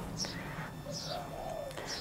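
Faint bird calling in the background: a low, short coo about halfway through and a couple of faint high chirps, over quiet outdoor background.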